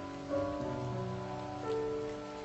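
Soft, slow solo piano music, held notes giving way to new ones a few times, over a faint even hiss.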